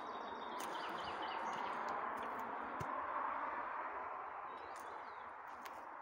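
Outdoor forest ambience: a steady rushing noise that swells toward the middle and eases off, with a bird's short high chirps in quick succession about a second in.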